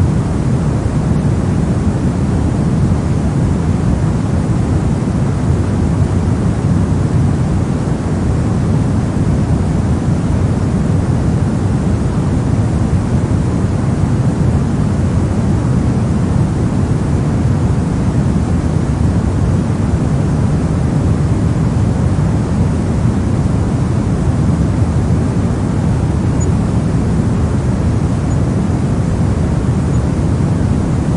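Steady pink noise: an even, unchanging hiss weighted toward the low end.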